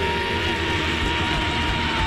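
Rock band playing live, with one long high note held steady over the band.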